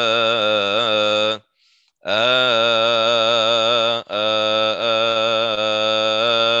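A single voice chanting a Coptic hymn melody on a wordless 'uh' vowel, holding long notes with a wavering, ornamented pitch. It comes in three phrases, broken by a short breath about a second and a half in and a brief break about four seconds in.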